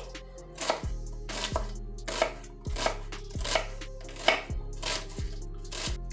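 Kitchen knife dicing an onion on an end-grain wooden cutting board: about ten sharp knife strokes onto the board, irregularly spaced.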